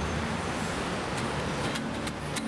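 Busy city street traffic: a steady rush of cars and buses driving past.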